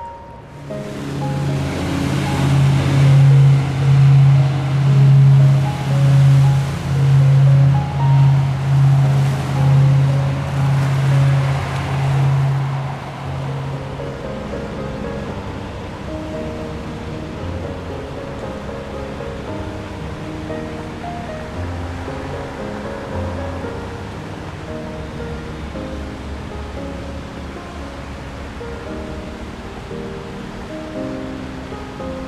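Background music: a low note swelling about once a second under a rushing, wave-like wash for the first dozen seconds, then a lighter run of short melodic notes.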